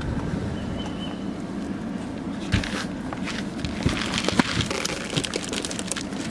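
Deer muzzling and eating from a paper feed bucket held out of a car window: rustling of the paper and crackling clicks, denser from about halfway through.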